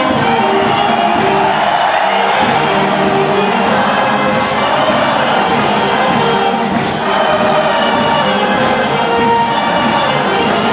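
A band with brass plays a lively dance tune with a steady beat, over the noise of a large, cheering crowd.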